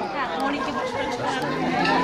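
Several people talking at once, overlapping indistinct chatter.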